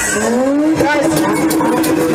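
The beat drops out at the start, and a voice on the microphone holds one long note that rises and then stays level, with other voices over it.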